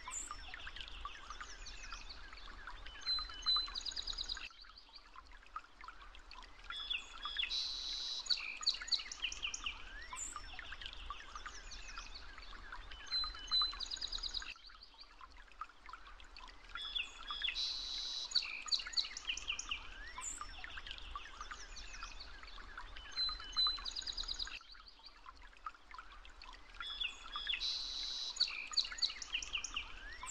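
Birdsong with many chirps and trills, a recorded nature track that loops about every ten seconds.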